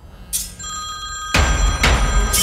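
A mobile phone ringtone starts about half a second in and keeps ringing. About a second and a half in, a sudden loud low boom comes in over it.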